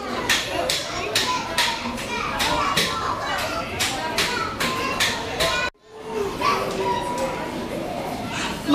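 Background chatter of children and adults in a busy indoor play hall, with a run of quick, sharp clicks or taps about two to three a second. The sound drops out for a moment about six seconds in.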